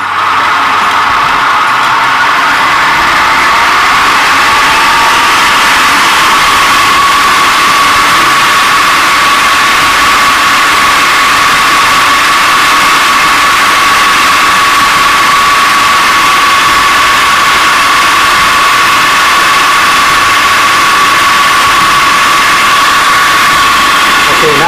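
Electric food processor motor running at high speed with a steady high whine, blending a raw pork and chicken farce toward a smooth, fine paste. A fainter second tone rises in pitch over the first few seconds.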